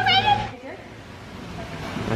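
A woman's brief high-pitched excited squeal, one held note that lifts at the end.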